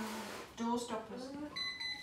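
A high, steady electronic beep, with a short break in it, starts about a second and a half in, after some quiet talk.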